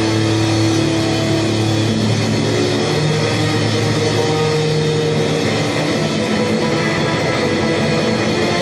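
Blues-rock band playing live: a drum kit played with sticks, bass guitar and electric guitar, with long held notes over a steady, dense backing.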